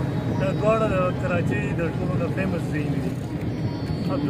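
Steady low rumble of a car's engine and tyres heard from inside the moving car's cabin, under a man's voice for the first half or so.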